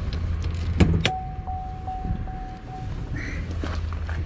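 Hood release lever under the dashboard of a 2019 Cadillac XT5 pulled: two sharp clicks about a second in, followed by a steady high tone for about two seconds over a low hum.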